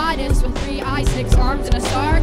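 Live band music: a drum kit with a strong kick drum, bass and keyboard, and a wavering, gliding melodic line over the top.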